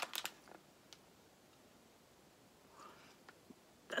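Quiet room tone with a few faint clicks and light handling noises, mostly in the first half-second and again about three seconds in: a snack packet being picked up and handled on a table.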